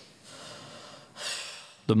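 A woman's single breathy exhale, like a sigh, about a second in, against a low background hiss.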